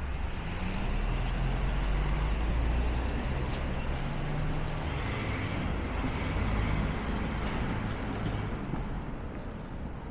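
Street traffic: a motor vehicle's engine rumbling low and steady, loudest in the first few seconds and easing off toward the end.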